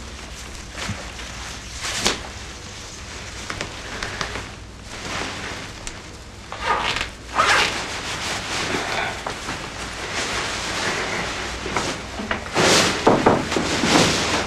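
Wedding gown fabric rustling and swishing as the dress is taken off, in several swishes, the loudest near the end.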